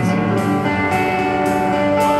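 Live rock band playing a song, guitars to the fore over a regular beat that strikes about twice a second.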